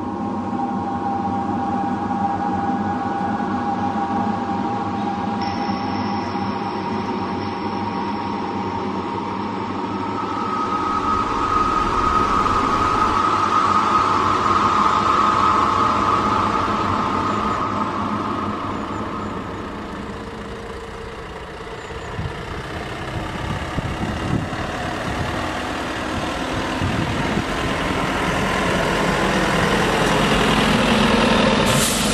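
Minibus interior on the move: steady engine and road noise with a sustained whine, heard from inside the cabin.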